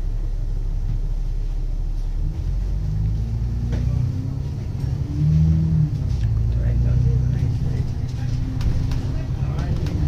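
Alexander Dennis Enviro 500 double-decker bus heard from inside the passenger deck: a low engine and drivetrain drone that rises and shifts in pitch from about three seconds in and is loudest around the middle. A few light knocks and rattles sound over it.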